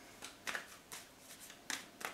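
A tarot deck being shuffled in the hands: about five short, crisp card flicks, fairly quiet.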